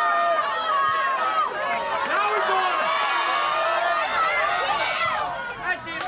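Many voices shouting and calling out over one another at a soccer game, with a short dip in the noise just before the end.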